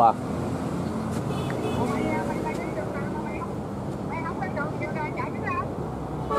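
Steady outdoor traffic rumble from passing vehicles, with faint voices talking in the background.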